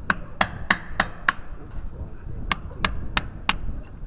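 Hand hammer striking in two quick runs, five blows and then four, about three a second, each a sharp crack.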